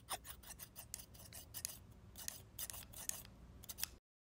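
Scissors snipping through a doll's hair: a quick, irregular run of crisp snips, about four a second.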